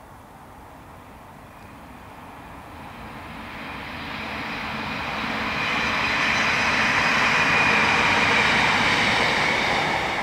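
Class 156 Super Sprinter two-car diesel multiple unit approaching and passing: the sound of its diesel engines and wheels on the rails grows over several seconds, is loudest as it goes by about six seconds in, and starts to fade near the end.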